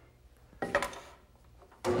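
A small wooden workpiece knocking two or three times as it is set down on a cast-iron table-saw top, a short cluster of light knocks about a third of the way in.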